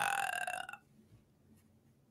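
A man's drawn-out, creaky hesitation sound, "uhh", trailing off in the first part, followed by near silence.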